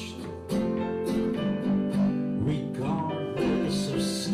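Acoustic guitar strummed and picked together with an electric keyboard, playing the instrumental accompaniment between sung lines of a slow folk song.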